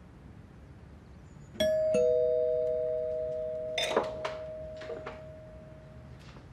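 Two-tone ding-dong doorbell chime about a second and a half in: a higher note, then a lower one, ringing out slowly. A few sharp clicks follow while the chime fades.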